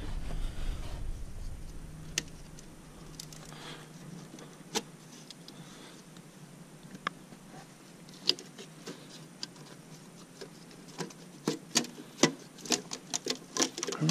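Scattered light clicks and ticks, growing more frequent in the last few seconds, as hands handle the metal head gasket lying on the cylinder block deck of a 6.7 Cummins diesel.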